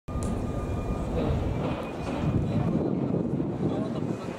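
City street noise: a steady rumble of traffic with the murmur of a waiting crowd's voices.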